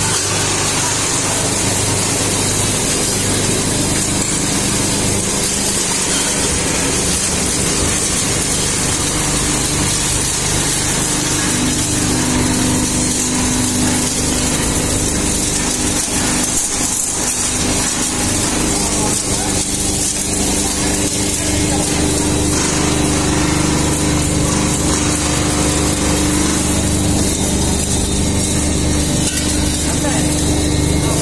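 A large engine-driven machine running steadily, its engine note shifting a little about twelve seconds in and again a little after twenty seconds.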